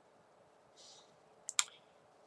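Two sharp clicks in quick succession, a little past the middle, after a soft brief hiss.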